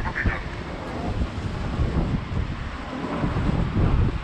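Wind buffeting the microphone, an uneven low rumble, over faint city street noise.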